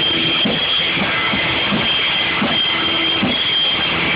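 Live rock band playing loudly, with long held notes over drums in a dense, noisy mix.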